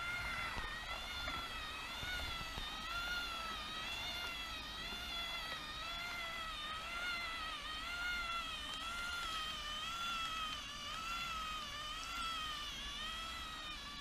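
Magnorail drive motor and its cogs running, a steady whine of several stacked tones that wavers up and down in pitch in a regular cycle, roughly every two-thirds of a second. It is a noise that wrapping the motor in cloth, packing foam around it and oiling it have not cured.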